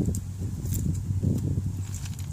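Faint clicks and rustling from the wire basket of a Weasel Nut Gatherer as its flexible wire straps are pulled apart by hand, over a steady low rumble.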